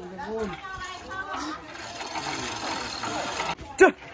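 Manual chain hoist clattering as it lifts a loudspeaker cabinet, with men's voices around it and one loud shout near the end.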